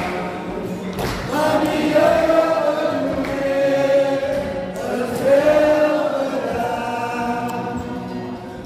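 Congregation singing together in a slow hymn, with long held notes.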